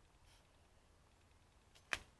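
Near silence with a faint low background hum, broken by one short sharp click near the end.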